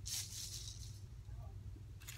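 Plastic gift bows and curling ribbon rustling and crinkling as they are handled, loudest in the first half second and then fading, over a steady low hum.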